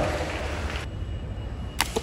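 A single sharp shot from a rifle near the end, with a fainter tick just after, over a steady low room hum.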